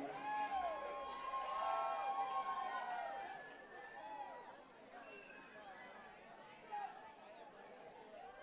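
Audience chatter between songs: many voices talking at once, louder at first and dropping to a low murmur after about three seconds, with one short louder sound near the end.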